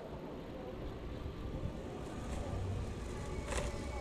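Steady low rumble of wind on the microphone and a bicycle rolling along a paved path, with one brief click about three and a half seconds in.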